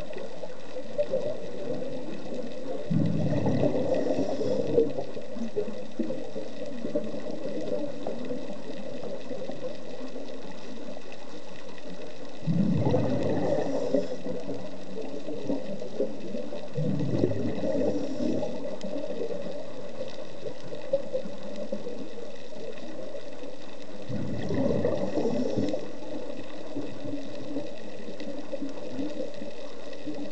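Scuba diver's exhaled bubbles from the regulator, heard underwater: a bubbling rush four times, several seconds apart, each lasting a second or two, over a steady underwater background hiss.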